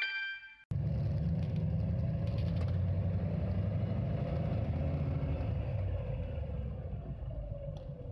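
City bus driving, heard from on board: a steady low engine and road rumble with a faint whine that drops in pitch near the end as the bus slows.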